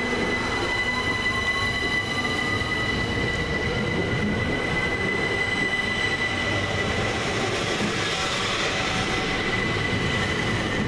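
Southern Class 377 Electrostar electric multiple unit running past along the platform, its wheels rumbling on the rails. A steady high-pitched whine runs throughout, with a fainter rising whine in the first few seconds.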